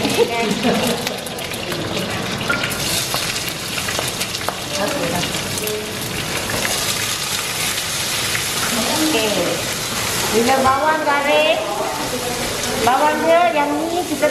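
Onions sizzling steadily as they fry in hot oil in a frying pan, stirred with a spatula.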